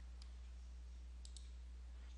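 Faint computer mouse clicks: one about a quarter second in, then a quick pair a little past a second in, over a steady low hum.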